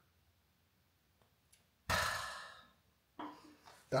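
A beer being opened off-camera: a sudden hiss of escaping gas about two seconds in that fades within a second.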